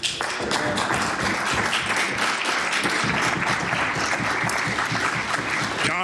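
Applause from many assembly members clapping at once, dense and steady in level.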